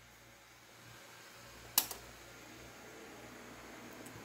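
A single sharp click about two seconds in, over a faint steady hum and hiss: a bench DC power supply being switched on.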